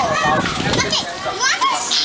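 Several children's voices chattering and calling out over one another, with no clear words.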